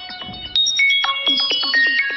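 A mobile phone ringtone playing a bright electronic melody of bell-like notes, with a short break about half a second in before the tune carries on.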